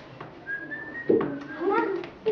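A short whistle, one thin tone rising slightly in pitch, about half a second in; from about a second in, a child's voice follows.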